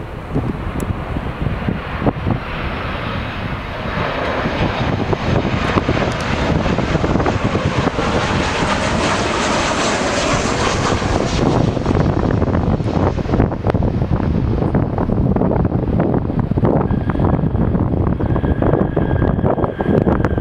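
Boeing 737 airliner's jet engines on landing: a rising hissing jet noise that peaks about halfway through as the aircraft passes at touchdown, then fades in the highs while a deep rumble grows louder as it rolls out down the runway. A faint steady whine joins in near the end.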